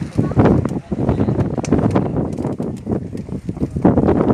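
Wind buffeting the microphone: a loud, ragged rumble that starts abruptly and keeps gusting.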